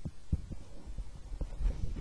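Footsteps: a few irregular low thuds as a person walks across a room.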